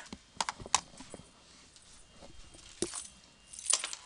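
A few scattered light clicks and taps, about five in all, with a small cluster near the end, over a quiet room background.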